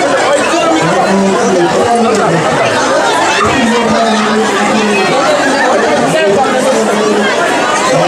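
A man speaking continuously into a handheld microphone, with the chatter of the surrounding crowd.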